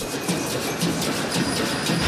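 A group of metal güiras, handheld ribbed metal cylinder scrapers, played together in a quick steady rhythm of rasping scrape strokes, several a second.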